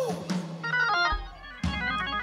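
Organ playing held chords that change every fraction of a second, with a deep bass note coming in about a second in.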